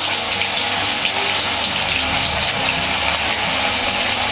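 Masala-coated ribbon fish frying in hot oil in an iron kadai: a steady, dense sizzle and crackle of bubbling oil.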